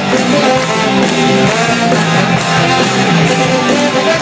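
Live ska-punk band playing loudly: electric guitars and drums with a trombone played into the microphone, recorded on a phone in the crowd.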